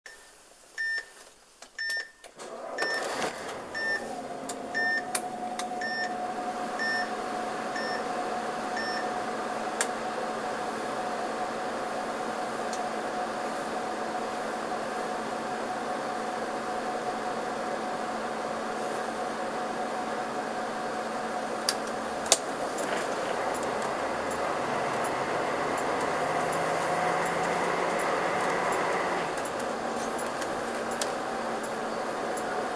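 Inside a Karosa B731 city bus: a short electronic beep repeats about every two-thirds of a second for the first several seconds. The diesel engine then runs steadily with a faint steady whine, and grows a little louder over the last few seconds as the bus pulls away.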